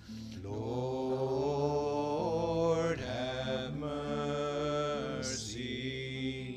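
Slow liturgical chant sung in long held phrases over sustained low accompaniment notes.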